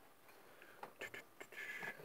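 Faint clicks and taps of tools being handled on a workbench, with a short scrape near the end.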